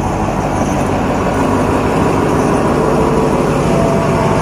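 Alsthom diesel-electric locomotive 4401 running loudly as it passes close by along the platform, its diesel engine rumbling steadily at the head of a passenger train.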